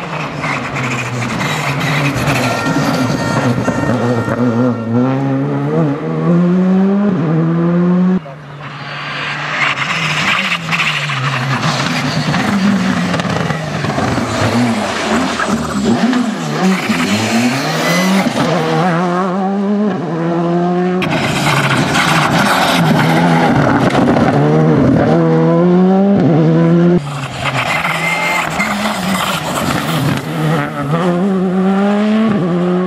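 Škoda Fabia Rally2 rally car's turbocharged four-cylinder engine revving hard at full throttle, its pitch climbing and dropping again and again through quick gear changes. These are several separate passes joined by cuts, about 8, 21 and 27 seconds in.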